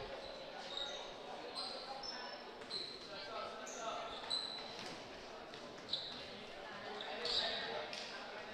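Quiet gymnasium ambience: short high sneaker squeaks on the wooden court, faint voices of players and spectators, and a ball bouncing a couple of times.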